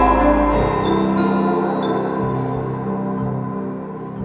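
Live instrumental music from piano and ensemble in sustained, slow-moving chords. A deep bass note drops away about half a second in, a few high struck notes ring out, and the music grows gradually quieter.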